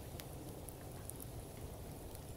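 Wood campfire crackling faintly, a few sharp pops over a low, steady hiss.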